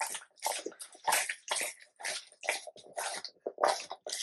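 Yellow Labrador retriever eating raw beef and chicken pieces off a tabletop: wet, irregular chewing and lip-smacking, a few sounds a second.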